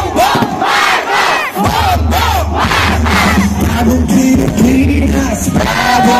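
Large crowd cheering and shouting, many voices overlapping. About two seconds in, amplified music with a heavy, steady bass starts playing underneath from loudspeakers.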